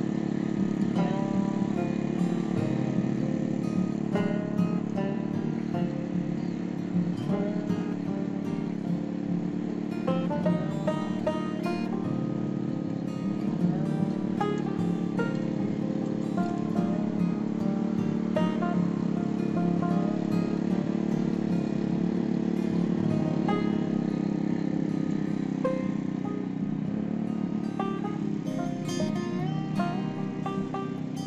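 Background music with plucked-string notes, over the steady running of a small petrol mini-tiller's engine as it churns dry, hard soil.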